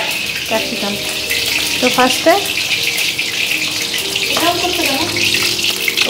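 A steady high hiss, with faint voices in the background.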